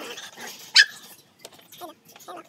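A chocolate Labrador puppy gives one loud, sharp yelp a little under a second in while it is held and washed in its bath.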